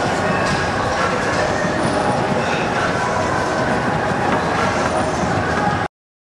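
Treadmill running, a steady mechanical rumble of belt and motor amid more treadmills in use; the sound cuts out for a moment near the end.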